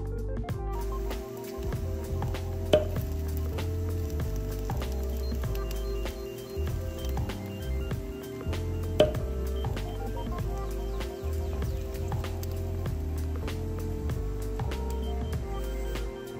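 Background music: held melodic notes over a repeating bass line, with a sharp accent hit twice.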